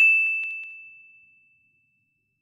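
A shiny 'ding' sound effect: a single bright chime ringing on one high tone and fading out over about a second and a half.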